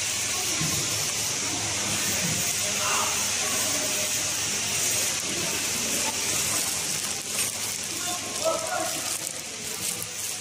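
Steady high hiss of a running pillow-type mask packaging machine, with faint voices in the background. In the later seconds the sealed plastic mask pouches crinkle as they are handled.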